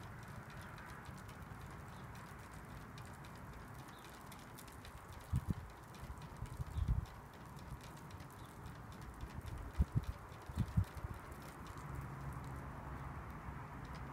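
A thin wooden stick stirring pH 4 calibration buffer powder into water in a clear plastic cup: faint light ticks of the stick against the cup over a steady low background noise. A few short dull knocks come in bunches around the middle.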